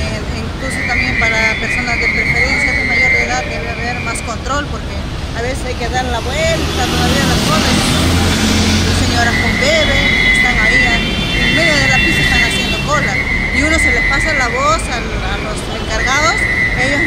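A woman talking in the street over traffic noise, with a heavier vehicle passing about halfway through. A steady high-pitched tone sounds on and off.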